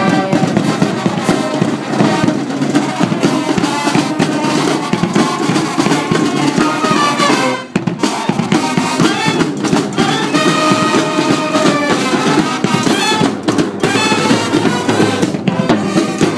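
College marching band playing live: saxophones and brass over a driving drum beat, with a short break in the sound about halfway through.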